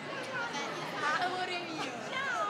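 Indistinct chatter of several people talking at once, overlapping voices with no single clear speaker.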